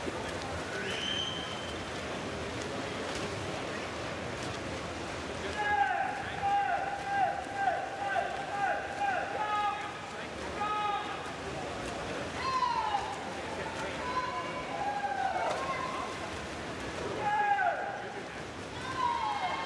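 Steady indoor pool-hall noise. From about six seconds in, a voice shouts short, repeated calls of encouragement, several a second, and more yells follow later on.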